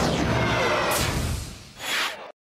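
Short TV sports graphic stinger: a booming musical sting with a swoosh about a second in and another near the end, fading out before a cut.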